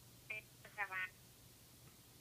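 A brief snatch of a voice on P25 digital police radio, lasting under a second, played back through a Whistler WS-1080 scanner's speaker with a narrow, telephone-like sound. A faint low hum runs underneath.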